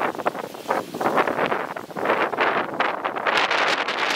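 Gusty wind buffeting the microphone, heard as an irregular, unbroken run of noisy rustling bursts.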